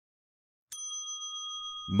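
A single bell-like chime comes in sharply about two-thirds of a second in and rings on steadily: a transition sound effect marking the start of the next numbered section.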